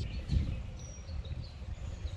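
Outdoor garden ambience: a low rumble, like wind on the microphone, with a few faint, short, high bird chirps, one a brief thin whistle about a second in.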